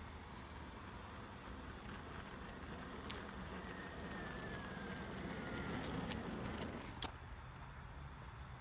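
Faint rumble of an electric longboard's wheels rolling on asphalt, swelling a little and then dropping off, with a faint falling whine partway through. Two sharp clicks stand out, one about three seconds in and one near the end.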